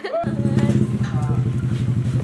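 A small motorcycle-type engine running steadily close by, cutting in abruptly just after a short laugh at the start.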